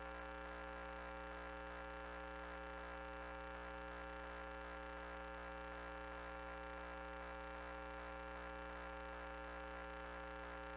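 Faint, steady electrical hum made of several constant tones, with a light hiss above it: interference picked up on the audio line of the sewer-inspection camera system.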